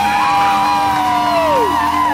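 Live rock band's sustained electric guitar notes ringing over the crowd's cheering and whoops. One high held note slides down about one and a half seconds in.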